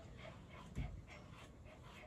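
An elderly Shih Tzu panting faintly, with a soft low bump just under a second in.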